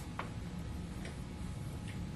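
Quiet room tone: a steady low hum with three faint, sharp clicks a little under a second apart.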